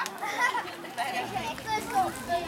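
Several children talking and calling out to one another in high-pitched voices, overlapping chatter.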